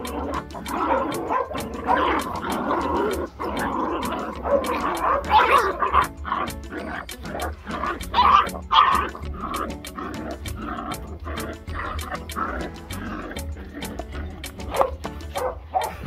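Background music with a steady beat, and over it pit bull puppies barking as they play tug-of-war with a cloth.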